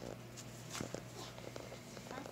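Faint scattered taps and rustles over a low steady hum.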